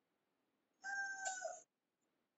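A single short, high-pitched cry of under a second, starting about a second in, holding a steady pitch and bending slightly at its end.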